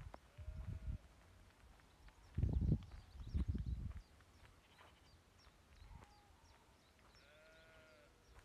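Sheep bleating several times, with a longer bleat near the end. Bursts of low rumbling noise come about two and a half and three and a half seconds in.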